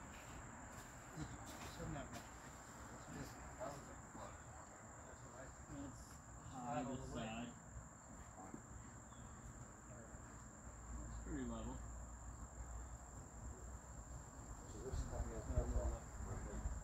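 A steady, unbroken high-pitched insect drone, with faint distant voices now and then.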